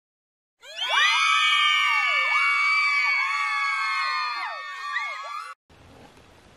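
Many voices screaming together, swelling in just under a second in and holding for about five seconds with wavering pitches, then cut off abruptly.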